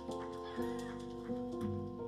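Keyboard playing held chords that change every half second or so.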